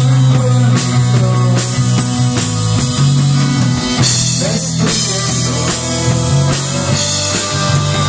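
Live rock band playing: two electric guitars, bass guitar and a drum kit keeping a steady beat, in an instrumental stretch without singing.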